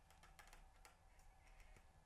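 Near silence: room tone with a few faint, small ticks.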